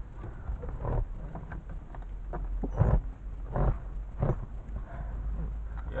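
Handling and movement noise in a small aircraft's cockpit: a low rumble broken by a few knocks and rustles as the camera is moved about.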